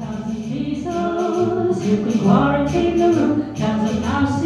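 Small band playing a song live: singing voices over guitar accompaniment with steady low bass notes.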